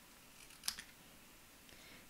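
Paper snips cutting through a strip of white cardstock: a faint, short snip with a sharp click about two-thirds of a second in.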